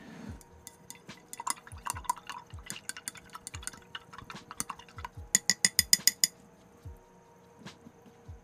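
Acrylic paintbrush being rinsed in a glass jar of water: the brush swishes and clicks irregularly against the glass. A little past halfway, a quick run of about ten ringing taps on the jar.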